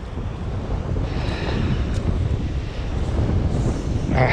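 Wind buffeting the microphone in a steady low rumble, with the sea washing over the rocks behind it.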